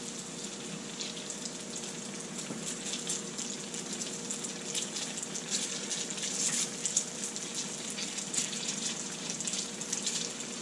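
Raised yeast donuts deep-frying in hot oil in a cast-iron skillet: a steady sizzle with a dense crackle of popping bubbles. The crackle grows busier about halfway through as another donut is lowered in.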